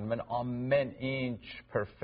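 A man talking in Armenian, in a steady conversational flow with short pauses.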